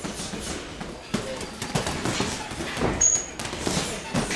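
Boxing gloves hitting heavy punching bags: irregular punch thuds and slaps, with a brief high-pitched squeak about three seconds in.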